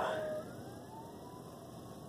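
Faint siren wailing far off, its pitch slowly rising and falling.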